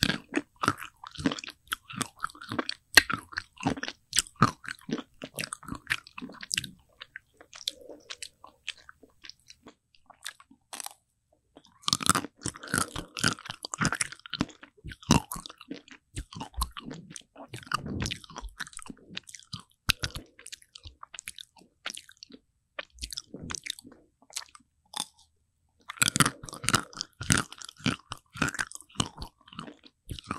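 Close-miked crunching and chewing of an Okdongja ice cream bar's chocolate shell, in clusters of crisp bites with sparser chewing around a third of the way in and again shortly before the end.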